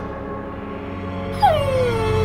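Music holding a steady sustained drone. About one and a half seconds in, a dog-like whimper comes in suddenly and slides down in pitch for about a second.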